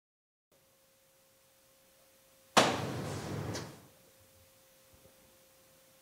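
A faint steady hum, then a sudden thump about two and a half seconds in, followed by about a second of fading rustling noise.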